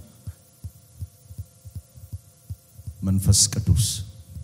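Soft low thumps, several a second, over a faint steady hum from the sound system. Near the end the man's voice bursts in loudly and briefly on the microphone, with a strong hiss.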